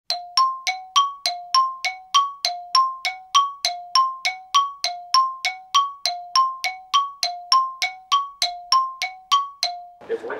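Chime-like dinging sound effect, two notes alternating low-high at about three strikes a second, steady and even throughout.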